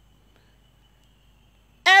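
Near silence in a pause of a woman's spoken prayer, with only a faint steady high tone. Her voice comes back in just before the end.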